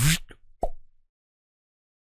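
A man's voice finishes a word, then he gives one short mouth-made pop that falls in pitch, a vocal sound effect for a teleport. Then dead silence.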